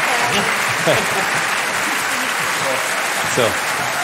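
Studio audience applauding steadily, a dense even clapping throughout.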